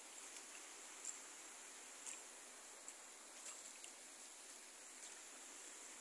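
Near silence: a faint steady rush of water running over the concrete spillway, with a few soft clicks.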